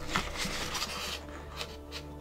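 Paper rustling and rubbing as a hardcover book and its paper dust jacket are handled and turned over, strongest in the first second, over faint background music.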